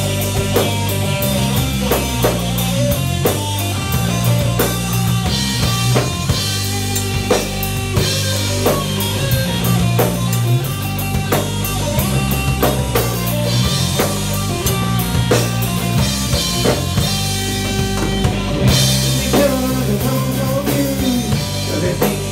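Three-piece rock band playing live: drum kit, electric bass and electric guitar in an instrumental passage, the drums keeping a steady beat. The cymbals grow brighter near the end.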